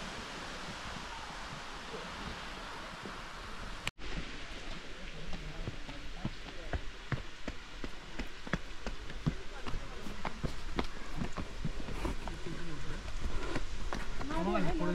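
Outdoor ambience: a steady hiss for the first few seconds, then, after a cut, scattered light clicks and taps, with faint voices of people talking growing near the end.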